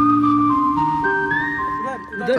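Background music: a melody of held notes stepping from pitch to pitch over a low bass line.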